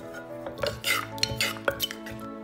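A metal spoon scraping and clinking against the inside of a clay mortar while stirring chilli dressing, about six short clinks in the second half, over background music.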